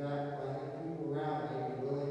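A man's voice intoning at a steady, level pitch, like a chant.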